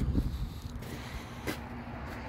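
Wind rumbling on the microphone, uneven and low, with a single sharp click about one and a half seconds in.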